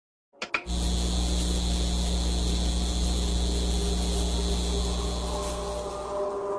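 A steady mechanical whirring with a deep hum, starting suddenly with a couple of clicks; a few held tones join in near the end.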